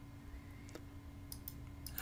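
A few faint computer mouse clicks in the second half, over a low steady hum.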